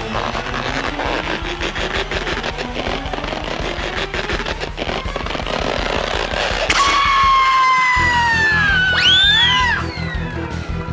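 Cartoon background music with comic sound effects: slowly rising tones as the slingshot is stretched, then a long falling whistle and, near the end, a wobbling whistle that swoops up and back down.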